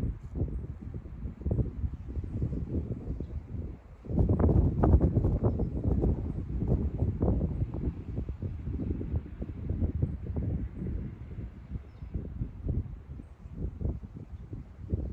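Wind buffeting a phone microphone: an irregular low rumble in gusts, loudest about four seconds in.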